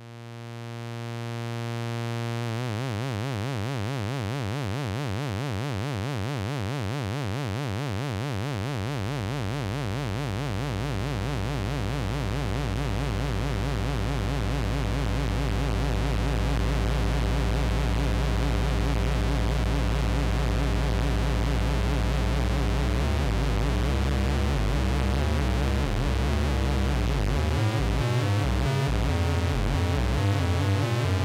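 Behringer Cat analog synthesizer played as a noise jam. A sustained buzzy tone fades in, then turns into a wavering, beating drone over a bed of hiss as the knobs are turned. A deep bass comes in about ten seconds in, and after about twenty seconds the low end breaks into a stuttering, choppy rhythm.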